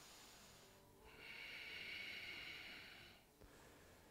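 A person's audible breathing close to the microphone: a faint breath, then from about a second in a longer, soft, breathy hiss of about two seconds that swells and fades.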